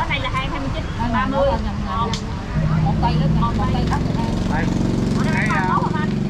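A motor vehicle's engine running close by: a steady, rough, low drone that gets louder about halfway through and holds steady, under a few brief spoken words.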